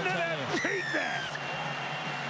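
Television rugby league broadcast audio: a commentator speaking, with a brief high, falling sweep about half a second in.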